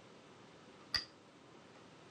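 A Go stone placed on a wooden Go board: one sharp click about a second in.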